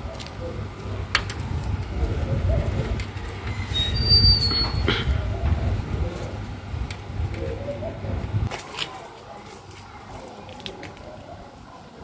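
Low rumble of handling and wind noise on the camera microphone, with scattered light clicks, as a tripod tribrach is adjusted by hand to centre its level bubble. About four seconds in there is a brief high-pitched squeak, and the rumble drops away after about eight and a half seconds.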